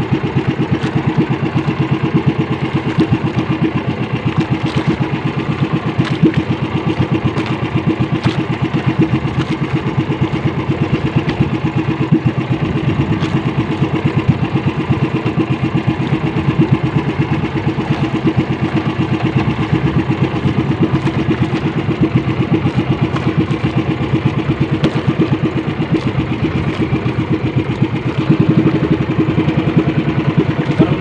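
Small engine of a motorized outrigger boat running steadily at a constant speed while trolling.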